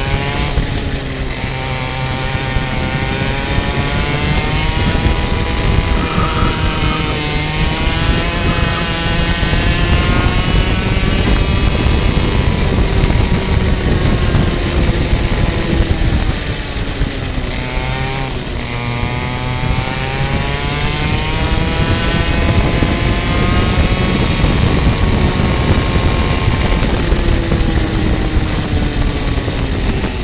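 Onboard sound of a two-stroke racing kart engine at high revs, its pitch rising along the straights and dropping each time it slows for a corner, with the deepest drop just past halfway. A steady high hiss runs under it.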